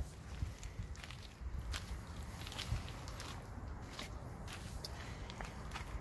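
A child's footsteps crunching on gravel, a few scattered irregular crunches over a low rumble.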